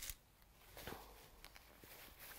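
Near silence with the faint rustle of cotton fabric being handled while a pin is put in, slightly louder a little under a second in.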